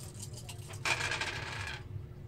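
Three dice shaken in cupped hands and rolled onto a wooden tabletop, a dense rattle and clatter lasting about a second before they settle.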